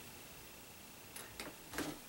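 Quiet room tone with a few faint, short clicks in the second half.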